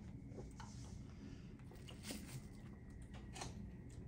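Quiet room tone with a few faint clicks and rustles of eating: a milkshake cup set down on a table and a fork working in a plastic salad container.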